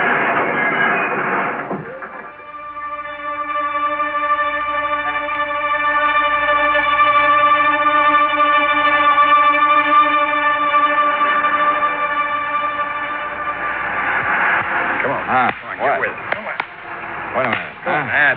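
Radio-drama sound effect of a car skidding into a crash, ending about two seconds in, followed by a long sustained music chord as a scene bridge; voices come in near the end.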